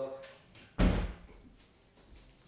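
A door shut with one loud thud just under a second in, dying away quickly.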